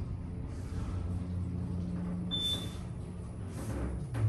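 Otis Gen2 elevator car travelling upward: a steady low hum of the ride, with one short high beep a little past halfway through as the car passes a floor.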